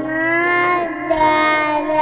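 Instrumental trap type beat in a break without drums or bass: a high, voice-like melodic lead holds two long notes of about a second each, with slight pitch bends.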